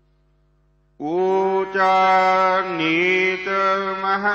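A short near-silent pause holding only a faint steady hum. About a second in, a man's voice starts chanting a line of Gurbani in long held notes.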